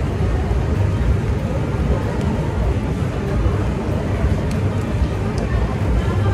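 Steady low rumble of outdoor background noise, with indistinct voices in it.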